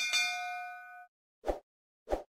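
Notification-bell 'ding' sound effect, struck once and ringing for about a second, followed by a short soft pop about a second and a half in.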